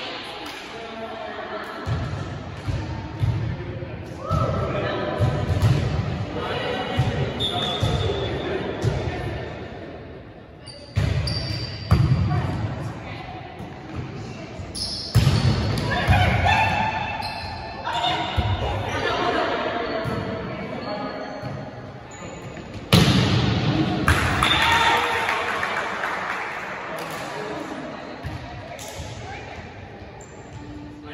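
Volleyball rally in a large gym: several sharp hits of hands on the ball, echoing off the hall's walls, with players calling out between them.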